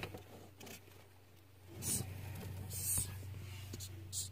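Madagascar hissing cockroach giving two short, faint hisses, about two and three seconds in, as it is grabbed by hand. Faint rustling of handling in the tank comes between them.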